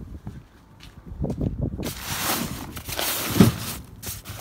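Rustling and scuffing with soft knocks as a person moves a handheld phone around a boat trailer and over piled gear. It is faint for the first second or so, then a dense rustling starts suddenly about two seconds in, with the loudest knock past three seconds.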